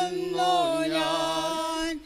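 A slow hymn chanted in Malayalam, held long on a few notes with a slight waver, the phrase ending right at the close.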